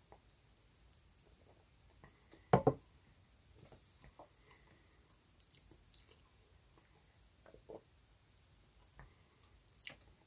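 Faint mouth sounds of a person drinking soda from a glass: sips, swallows and small lip smacks, with one louder double sound about two and a half seconds in.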